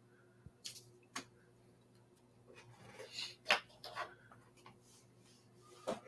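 Faint scattered clicks and rustles of hands handling fly-tying materials and tools at the vise, the sharpest about three and a half seconds in, over a low steady hum.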